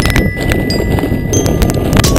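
Mountain bike rattling down a stone-paved path, its tyres knocking over the flagstones with a rapid, irregular run of sharp clicks and clatter over a rough rumble.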